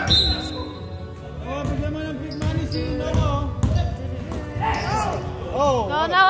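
Basketball dribbled on a hardwood gym floor during play, repeated thumps ringing in the large hall, with players' voices calling out, loudest near the end.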